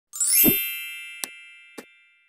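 Intro logo sound effect: a quick upward shimmer into a bright ringing chime with a low thump, slowly fading, followed by two short clicks.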